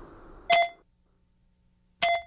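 Two short electronic beeps about a second and a half apart, with near silence between them.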